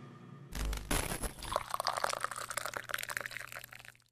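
Drink poured into a glass: a low thump, then about three seconds of pouring liquid that cuts off abruptly.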